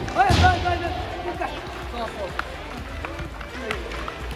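Soccer balls being kicked and bouncing on a hard indoor court floor: a few sharp thuds spread through the moment, under voices.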